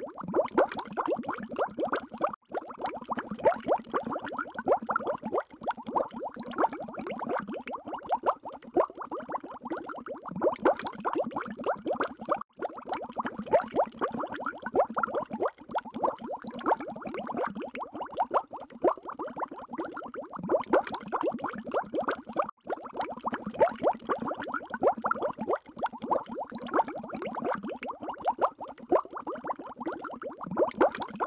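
A looped bubbling-water sound effect: a continuous stream of small pops and bubbles with brief breaks every few seconds.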